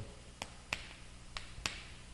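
Chalk tapping and clicking against a chalkboard as characters are written, four sharp clicks over a faint steady room hum.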